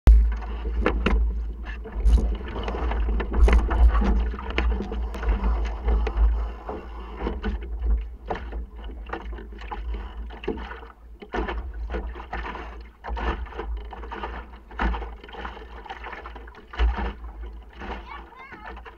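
Sailing dinghy under way, heard from inside the hull: water rushing and slapping against the hull with many irregular knocks from the boat, over a heavy low rumble of wind on the microphone that is strongest in the first seven seconds or so.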